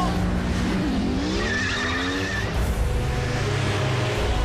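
Car-chase sound effects: sports car engines revving, their pitch falling and rising, with a tire squeal about a second and a half in.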